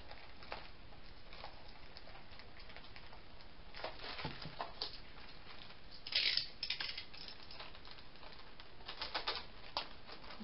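Light rustling and clicking as a thin metal cutting die and its plastic packaging are handled on a tabletop, with a louder rustle about six seconds in and a quick run of clicks near the end.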